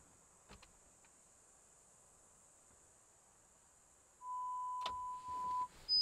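Steady electronic test tones from the Ford F-350's audio system speakers during its speaker walk-around diagnostic test. After near silence with a faint click or two, a steady mid-pitched tone sounds for about a second and a half, about four seconds in, then a higher tone starts near the end as the test moves on to another speaker.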